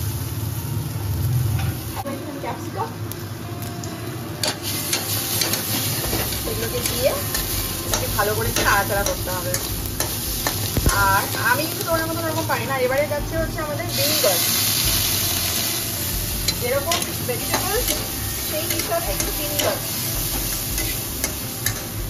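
Chopped vegetables sizzling in an aluminium kadai as a steel spatula stirs them, with frequent clicks and scrapes of the spatula against the pan. About two-thirds through, the sizzling briefly grows louder.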